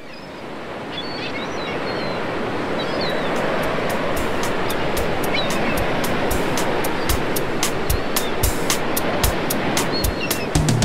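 Ocean surf washing on a beach, swelling in, with a few high bird calls over it; about three seconds in, a percussion beat of sharp ticks and low kicks joins the surf as a song's intro.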